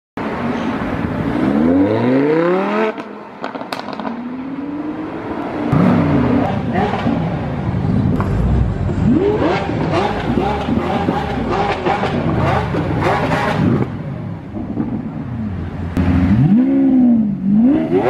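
Supercar engines revving hard through loud exhausts: the revs rise and fall again and again, with sharp pops and crackles. The sound dips briefly about three seconds in.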